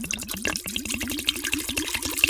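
Jägermeister pouring from a glass bottle into the stainless steel chamber of a Megahome water distiller, the bottle glugging in a rapid, even rhythm as air bubbles back through its neck.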